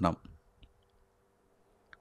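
A man's speech into a microphone trails off right at the start, then near silence with a few faint, small mouth clicks, the last one near the end.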